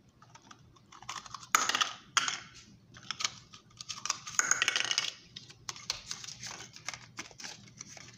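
Small plastic toy blocks being handled and knocked against a stone countertop as they are worked apart, a busy run of light clicks and taps with short rustling scrapes in between.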